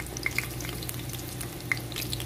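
Bay leaves and cumin seeds sizzling in hot oil in a nonstick pan, with a few scattered small pops over a steady low hum.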